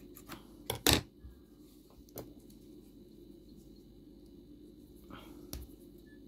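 Scissors clicking twice about a second in as the yarn is cut, followed by a few faint clicks and handling of the crocheted piece and yarn.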